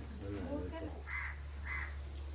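Two short, harsh bird caws about half a second apart, after a brief stretch of a man's voice.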